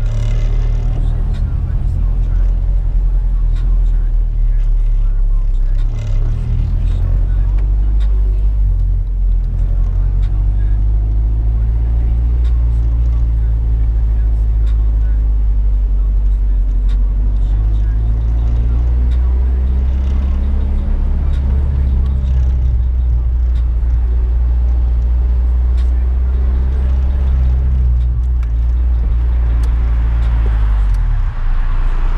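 Honda B20B non-VTEC four-cylinder with an aftermarket Vibrant muffler, heard from inside the Civic hatchback's cabin, running at low revs with a steady low drone; its pitch shifts a little a few times as the car pulls through a lot.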